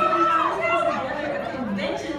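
Several voices talking over one another in a large hall, mostly speech with no other clear sound.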